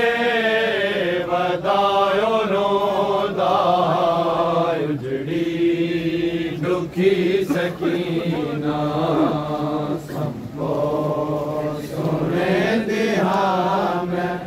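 Men's voices chanting a Punjabi noha, a Shia mourning lament, without instruments, in long wavering held notes with brief pauses between phrases.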